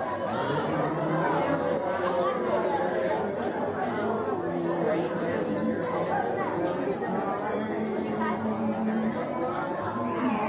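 Audience of children and adults chattering in a large hall, many voices overlapping with no single speaker standing out.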